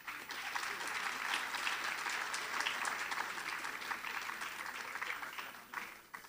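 Audience applause, many hands clapping together, starting to thin out near the end.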